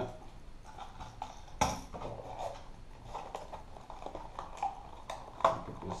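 Plastic lure packaging being handled and opened to take out a soft plastic frog lure: scattered small clicks and crinkles, the sharpest about one and a half seconds in and again near the end.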